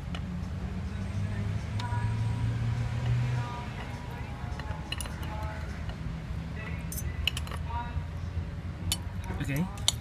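Knife and fork clinking and scraping against a ceramic plate as grilled vegetables are cut, with a few sharp clinks through the second half. Faint background voices and a low steady hum.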